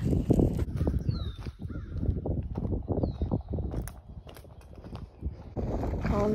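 Wind buffeting the microphone: an uneven low rumble that rises and falls in gusts. Over it a bird gives two short falling calls, about one and three seconds in.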